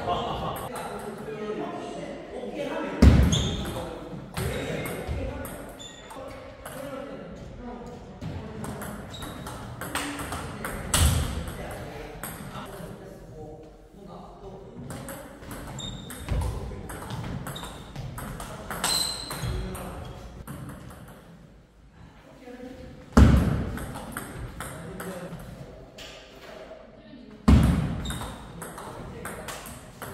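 Table tennis rallies: the celluloid ball clicks sharply off the rubber paddles and the table in quick back-and-forth exchanges, ringing in a reverberant hall. A few heavier thuds stand out, about 3, 11, 23 and 27 seconds in.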